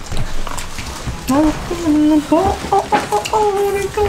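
A man's playful vocal noises: short squeaky sung sounds with sliding and held pitches, starting a little over a second in. Crinkles and clicks of plastic food packaging being opened run under them.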